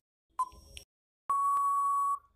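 Quiz countdown timer sound effect: a short beep about half a second in, then a long steady beep starting just past the middle that marks time running out.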